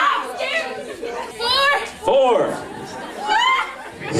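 Excited, indistinct voices and chatter in a large hall, with two high, rising exclamations, one about a second and a half in and one near the end.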